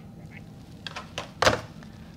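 Corded desk phone handset being hung up: a few light handling clicks, then one louder thunk as it drops into its cradle about a second and a half in.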